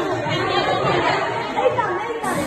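Overlapping chatter of a group of children talking at once in a large room.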